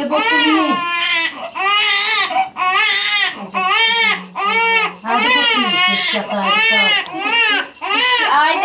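Newborn baby crying hard in a steady run of short, high-pitched wails, about one or two a second, without a break.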